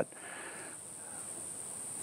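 Steady high-pitched insect chorus, with a soft intake of breath near the start.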